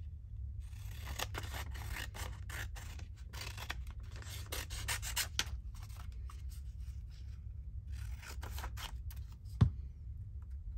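Scissors cutting paper in a run of snips, pausing around the middle and starting again near the end, with a single sharp tap just before the end.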